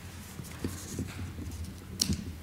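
A few soft, low knocks and light handling noise at a lectern, as someone arranges papers and shifts against it.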